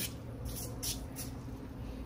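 Faint sizzling of foaming aerosol degreaser working on a greasy impact wrench. A few short, soft hisses come about half a second to a second and a half in.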